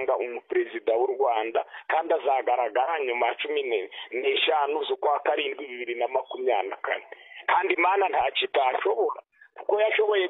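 A person talking continuously over a telephone line, the voice sounding thin and narrow, with brief pauses between phrases.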